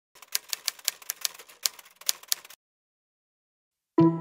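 A camera shutter clicking in rapid bursts, about five sharp clicks a second, stopping suddenly about two and a half seconds in.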